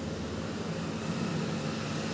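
A steady low hum runs on without a break.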